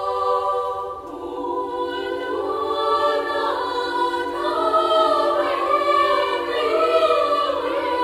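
Children's choir of girls singing a cappella. A held chord thins out about a second in, then a low sustained note enters beneath upper voices singing rising and falling phrases.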